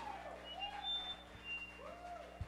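Lull between songs in a live rock set: a steady amplifier hum, with three short rising-and-falling vocal calls.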